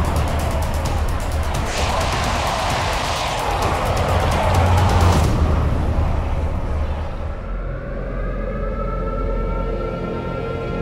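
Loud, dark film-trailer score with a deep rumbling low end: for the first five seconds a dense, noisy wash with rapid fast ticking, then the harsh top falls away and sustained, gradually rising tones take over.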